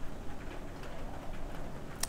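A dove cooing faintly over a steady outdoor background hiss and low rumble.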